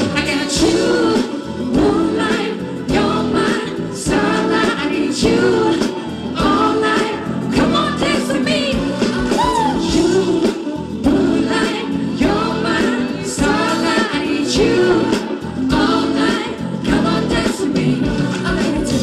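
Live pop band playing amplified through a PA, with vocalists singing over guitars and a steady drum beat.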